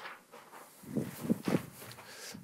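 Footsteps: a handful of quick steps about a second in.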